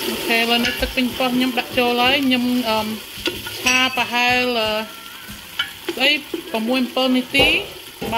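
Tomato sauce, garlic and lemongrass frying in a pot and stirred with a wooden spatula, with a steady sizzle. A pitched, voice-like sound comes and goes over it in short stretches.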